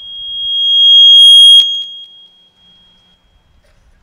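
A public-address microphone feeding back: one high steady ringing tone that swells loud over about a second and a half, is broken by a sharp click, then dies away within about another second.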